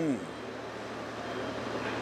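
A man's speaking voice ends a phrase just after the start, followed by a pause filled with steady, even background noise.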